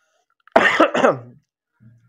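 A man coughing to clear his throat: two quick, harsh bursts back to back, about half a second in.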